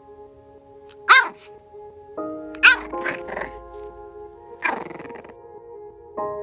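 A French bulldog puppy giving a few short, high barks, the loudest about one and two and a half seconds in, over soft background music.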